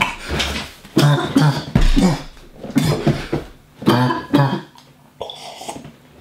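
A man's coughing fit: a run of harsh, rapid coughs, roughly two a second, easing off for the last second or so.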